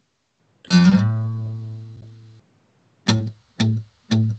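Acoustic guitar: one strummed chord about a second in, ringing out and fading over about a second and a half, then two short chords near the end, the opening of a song.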